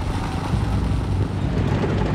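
A tracked tank on the move: a dense, steady low engine rumble with fast clattering from the tracks.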